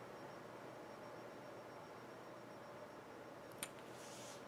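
Quiet room tone with a steady faint hiss, and one brief faint click near the end.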